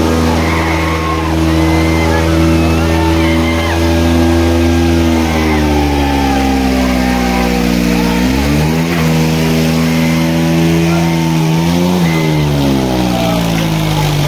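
Diesel tractor engines of a Kubota 5501 and a New Holland 3630 straining at full load while pulling against each other in a tug-of-war. The engine note holds steady, sags, then jumps up sharply twice, about eight and a half and twelve seconds in, with crowd voices over it.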